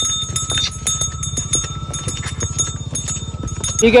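A bull walking on a dirt track on a lead rope, its steps making irregular light clicks, with a low rumble and a faint steady high ringing tone under them. A man says a couple of words near the end.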